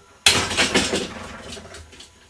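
A loaded barbell with iron plates racked onto the metal uprights of a weight bench: one sharp metal clank about a quarter of a second in, ringing and rattling as it dies away over about a second and a half.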